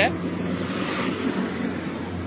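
Steady rushing wind noise on a phone microphone, carried outdoors while walking, over a low steady hum.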